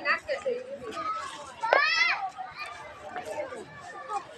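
Children's voices at play with scattered talk, and one loud high-pitched call that rises and falls about two seconds in.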